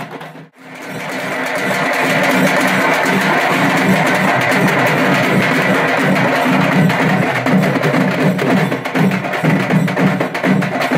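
Traditional Tamil temple drums beaten with sticks in a fast, continuous rhythm. The sound dips out briefly about half a second in, then swells back up and keeps going.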